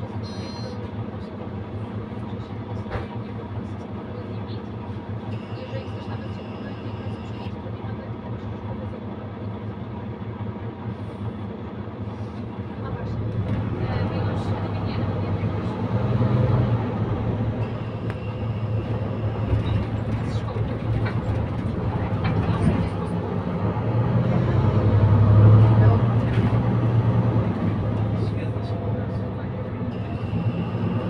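Interior sound of a Mercedes-Benz Citaro C2 K city bus: the diesel engine runs quietly at first while a high electronic tone sounds for about two seconds. From about halfway through the bus pulls harder, the engine and ZF EcoLife automatic gearbox growing louder with surges as it accelerates, loudest near the end.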